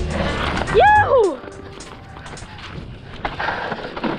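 Background music that stops about a second in, with a loud short whoop rising then falling in pitch just as it ends. After that, the steady rush of a mountain bike rolling down a dirt trail, with wind on the microphone and scattered small knocks from the bike.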